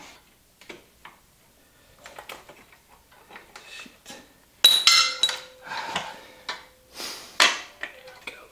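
Metal parts clinking and clattering as the dirt bike's rear wheel and drive chain are worked by hand. A sharp metallic clank a little past halfway rings on for a few seconds, and another loud clank comes near the end.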